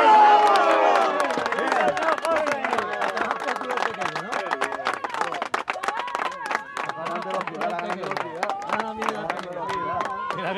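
Spectators shouting and clapping, greeting a goal. The shouts are loudest in the first second or so, and the clapping runs on throughout.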